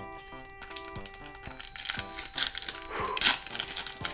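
A foil trading-card booster pack wrapper crinkling in the hands as it is torn open, in several short bursts that grow louder in the second half. Soft background music plays underneath.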